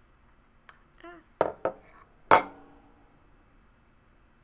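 Ceramic mug handled and set down on a wooden table: two light knocks, then a louder clunk with a brief ring a little over two seconds in.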